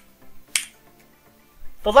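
A single sharp click about half a second in, a computer mouse click, followed by a man's voice starting near the end.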